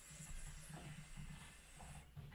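Faint draw through a Puffco Peak Pro electric dab rig: a soft rush of air that fades about half a second in, with low, irregular bubbling of the water in its glass chamber a few times a second.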